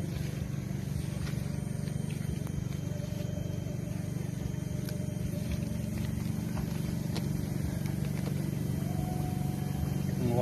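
Steady low drone of a running motor, with a few faint clicks.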